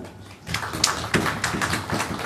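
Scattered hand clapping from a small audience: an irregular run of sharp claps starting about half a second in.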